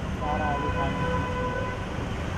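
A vehicle horn sounding once, a steady held tone lasting about a second, over the constant rumble of street traffic.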